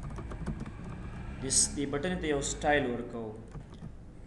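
Computer keyboard typing: a quick run of key clicks in the first second and a half, then a voice speaking briefly, louder than the keys.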